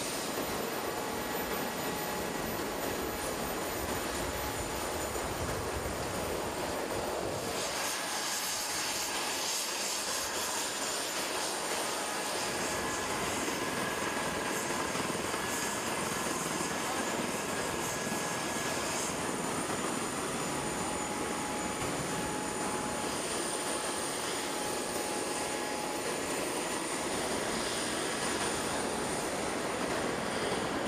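Steady aircraft turbine noise with faint, constant high whining tones. Its tone shifts about 7 seconds in and again near 19 seconds.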